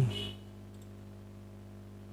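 A faint single computer mouse click about three-quarters of a second in, over a steady low hum.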